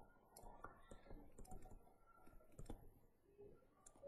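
Faint, irregular clicks and taps from handwriting a word in digital ink on a computer, in near silence.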